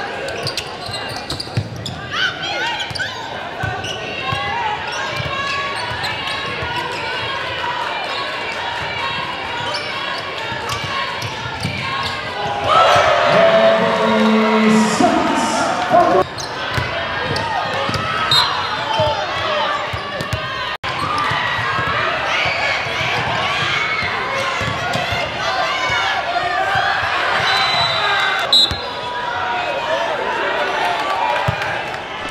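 Basketball game in a large gym: players' and spectators' voices carry across the hall, with a basketball bouncing on the hardwood floor. The voices get louder and busier from about halfway through for a few seconds.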